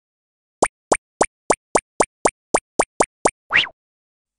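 Cartoon pop sound effects: eleven short, quick pops at about three or four a second, starting about half a second in, then a longer pop that slides upward in pitch near the end.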